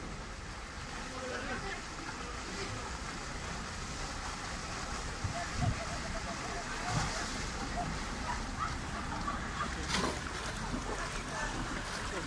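Rushing canal water with paddles splashing as narrow flat-bottomed boats are driven through it, under faint chatter of onlookers. A single sharp knock comes late on.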